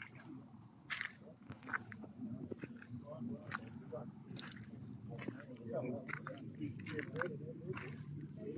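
Irregular crunching and clicking footsteps on wet, gritty ground strewn with debris, over a low murmur of voices in the background.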